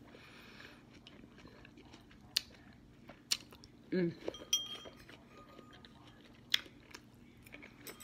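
Person eating noodles with a fork: quiet chewing with a few sharp clicks and clinks, and a short hummed "mm" about four seconds in.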